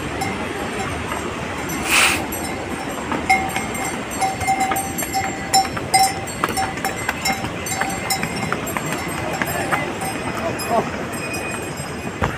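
A bell on a pony's harness ringing in short, irregular strokes at one pitch, over the steady rush of a mountain river.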